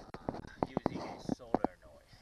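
Faint whispered speech with half a dozen small sharp clicks scattered through it.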